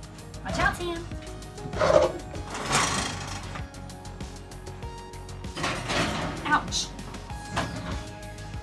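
Oven door opened and a cast-iron skillet slid onto the oven rack: several metal clunks and scrapes, the loudest about two seconds in. Background music with a singing voice runs underneath.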